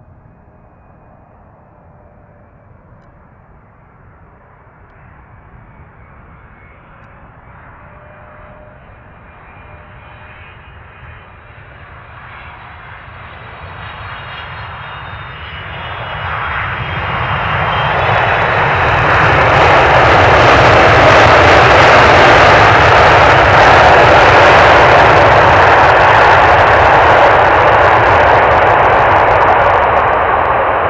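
Boeing 777F's GE90 jet engines: a faint whine on approach that slowly grows louder. After touchdown about 16 s in, it swells within a couple of seconds into a loud, sustained roar, typical of reverse thrust on the landing rollout, easing slightly near the end.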